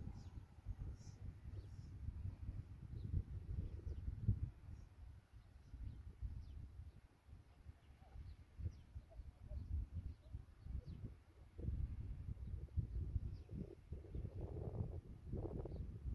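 Wind buffeting the microphone: an uneven low rumble in gusts that eases about midway and picks up again near the end.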